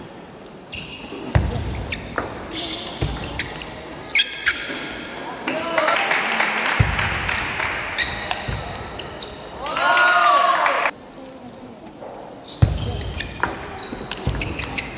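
Table tennis rallies: the plastic ball clicking sharply off the bats and the table in quick runs of hits. The sound cuts abruptly a few times as the edit jumps between points.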